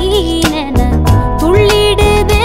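Music: a woman singing a Tamil film song in long held notes, over an instrumental backing with a steady drum beat.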